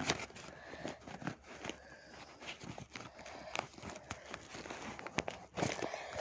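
Close-up handling of a pencil case: irregular rustling and small clicks as an item is pushed into one of its pockets, a tight fit that doesn't go in.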